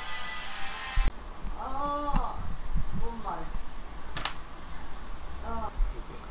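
A person's brief wordless murmurs, a few short hums of the kind "mm", broken by two sharp clicks, one about a second in and one about four seconds in.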